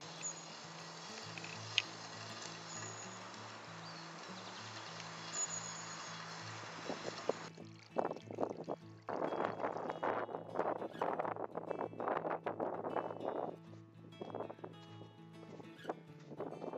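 Soft background music with steady low notes, over a steady outdoor hiss that gives way about seven seconds in to uneven, gusty rushing noise.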